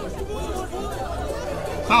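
Indistinct chatter of several voices, with a short, loud exclamation of "oh" at the very end.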